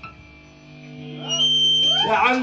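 A live rock band at a break in the song: the drums drop out and a held electric-guitar chord rings on, quieter. A thin, high, steady tone comes in about halfway, and short pitched swoops rise near the end.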